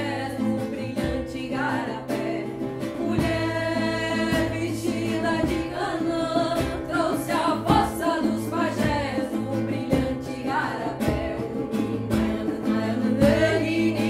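A group singing a ritual chant together over a steady low drone, with regular strummed or struck strokes keeping time.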